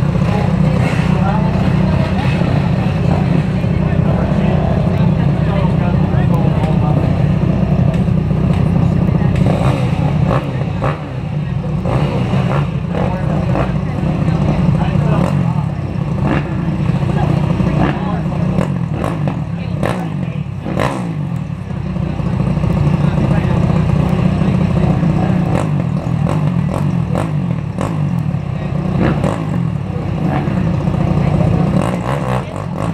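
Several dirt bike engines running together at idle with occasional revs, a steady low drone, with sharp clicks in the second half.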